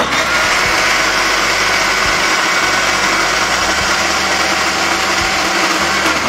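Electric mixer grinder (mixie) running at steady speed, grinding in its stainless steel jar with the lid held down by hand. It starts abruptly and holds at an even, loud level.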